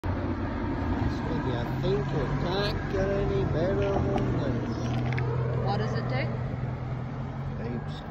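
A steady low engine hum, like a vehicle idling, with indistinct voices talking over it for a few seconds.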